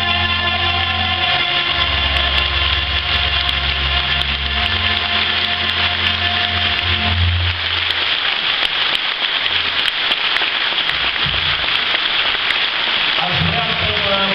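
A Romanian folk band with a taragot and violins ends a tune on a held final note about seven and a half seconds in, then audience applause carries on until a man starts speaking near the end.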